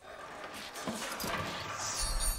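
A skeleton in armour tumbling down a stone well shaft: a run of irregular clattering knocks and bangs of bone and metal striking stone.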